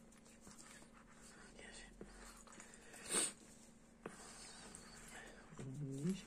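Quiet room tone with a faint steady hum, broken about three seconds in by one short hiss. A soft spoken word comes just before the end.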